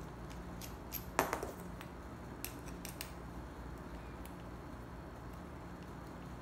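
Small metal clicks and taps of an aluminium RC hydraulic valve block and its small parts being handled and fitted by hand, the loudest a little over a second in and a few lighter ones between two and three seconds, over a faint steady low hum.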